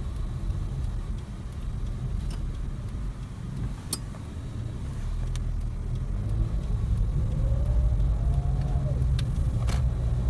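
Low, steady rumble of a Toyota car's engine and tyres heard from inside the cabin while driving, growing louder in the second half, with a few sharp clicks.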